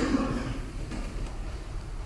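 A pause in speech: low room noise with a steady low hum.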